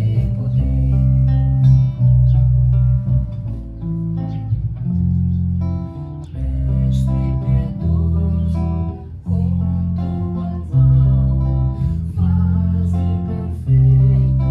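Electric bass guitar and guitar playing a slow instrumental tune together, the bass holding long low notes under the guitar's melody.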